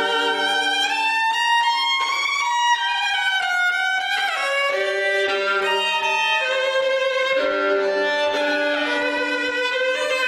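Solo violin playing the slow opening of a concerto in long, held notes, the line climbing over the first few seconds and dropping to lower notes about four seconds in. It is played with a relaxed lower body and a stable upper body, the free, untensed sound the player contrasts with playing tense.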